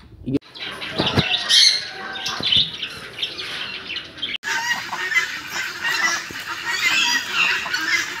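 Caged birds in an aviary calling and chattering all at once, with loud squawks among the calls. About four and a half seconds in the sound breaks off sharply and picks up again as another stretch of dense chatter.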